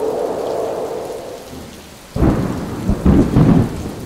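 Thunderstorm: steady rain, with a loud rolling thunderclap breaking in about two seconds in and rumbling on.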